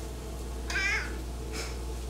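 A domestic cat gives one short, wavering meow a little before the middle, begging for food.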